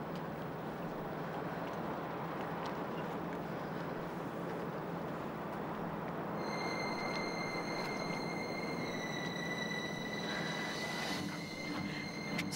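Steady rushing background noise with a low hum under it; about six seconds in, a thin, high, steady whistle-like tone joins and holds.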